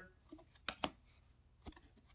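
Faint handling of a stack of hockey trading cards, with a few soft ticks as a card is slid off the front of the stack: two close together partway in and one more near the end.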